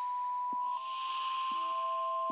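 Trailer sound design: sustained electronic tones held steady, with a soft hissing swell about half a second in and a few faint ticks.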